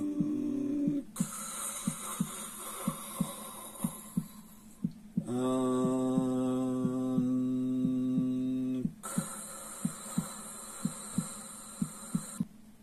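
A steady, fast ticking pulse, about two to three beats a second, like a heartbeat or metronome track, with a high hiss coming and going. From about five to nine seconds in, a low voice holds one steady chanted note of the mantra.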